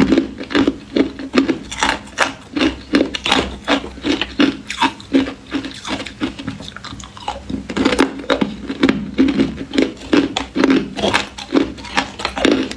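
Ice being chewed, a steady run of crisp crunches at about three a second.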